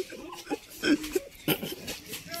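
A few short, grunt-like vocal noises from boys playing a rough-and-tumble game, with a sharp knock about one and a half seconds in.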